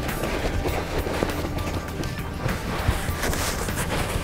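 Soft background music with the rustling and rubbing of a quilted fabric mat being rolled up by hand.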